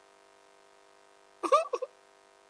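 A person's voice: a brief two-part exclamation about one and a half seconds in, over a faint steady hum.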